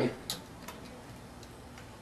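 A few light clicks as the coil spring is fed into the rear of a Spyder Pilot paintball marker's aluminium body. The clearest click comes about a third of a second in, with fainter taps after it.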